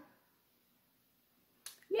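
Near silence in a pause between a woman's words, broken by one brief click shortly before she starts speaking again near the end.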